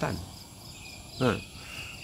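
Insects chirping steadily in the background during a pause in a man's speech, with a faint high thin tone in the second half. A brief vocal sound from the man comes about a second and a quarter in.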